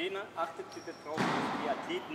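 Indistinct voices of people talking in a gymnastics hall, with a short burst of hiss-like noise lasting under a second, starting just past a second in.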